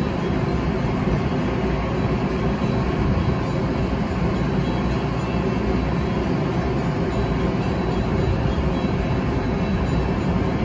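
Steady rumble of a Metra commuter train standing at the platform, mixed with wind buffeting the microphone. A few faint steady tones run under the noise.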